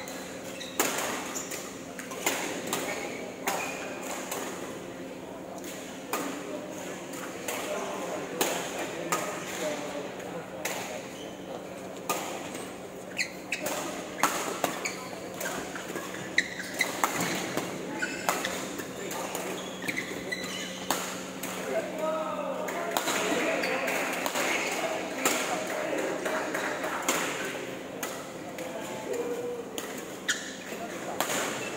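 Badminton rackets striking the shuttlecock in a rally: sharp hits at irregular intervals, about one a second, over a steady hall hum.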